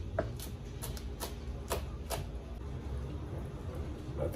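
Chef's knife shredding a roll of cabbage leaves, each stroke ending in a sharp knock of the blade on the cutting board, about two a second, thinning out after the first two seconds.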